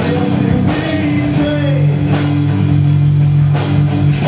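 Live heavy rock band playing: distorted electric guitars, bass and drum kit, with a long held low chord from about a second and a half in.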